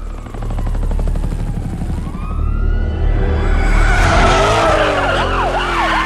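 A car engine revving over a low rumble, joined about four seconds in by a police siren in fast rising-and-falling yelps.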